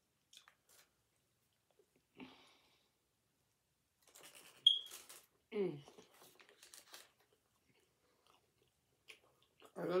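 Close-up chewing and wet mouth noises of someone eating a soft pita-wrapped gyro sandwich, with scattered small clicks and a sharp lip smack just before five seconds in. A short hummed "mm" follows.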